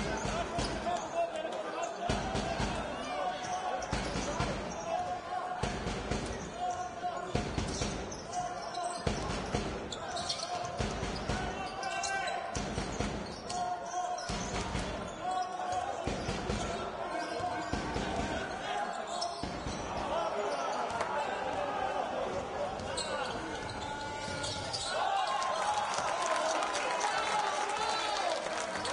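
Basketball game sound in an indoor arena: a ball being dribbled on a hardwood court in repeated thuds, with voices from players and the crowd, the voices getting busier over the last several seconds.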